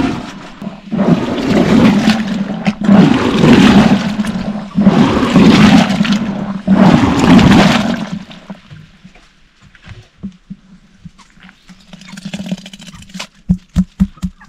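Curd being churned with a wooden plunger in a tall wooden butter churn: rhythmic sloshing and gurgling strokes, roughly one a second. The churning stops about eight seconds in, leaving a quieter stretch with a few small knocks.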